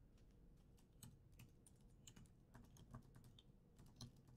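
Faint typing on a computer keyboard: soft, irregular key clicks as a phrase is typed.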